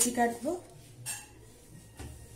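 A woman speaking briefly, then, about a second in, a single light clink of a steel bowl.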